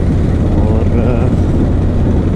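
Bajaj Pulsar 220F motorcycle's single-cylinder engine running as the bike rides along, a steady low rumble heard from on board.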